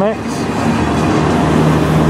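Freight train's autorack cars rolling past close by: a loud, steady rumble of steel wheels on the rails.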